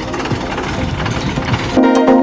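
A rough, steady mechanical rumble with low knocks. About two seconds in, background music with a regular plucked-string beat starts and becomes the loudest sound.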